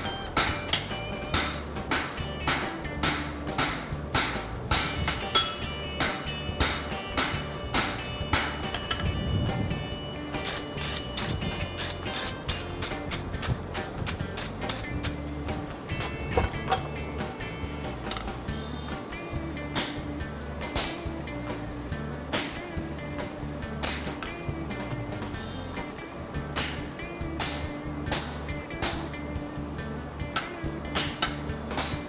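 Repeated hammer blows on hot steel at the anvil, irregular and at times two or three a second, as a heart bar shoe's welded joint is flattened and blended. Background music plays underneath.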